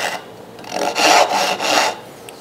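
A dovetail saw cutting a stop cut into a wooden board held in a vise. After a short pause, a quick run of back-and-forth saw strokes starts about half a second in and stops just before the end, as the kerf is taken down to just above the pencil line of the arch.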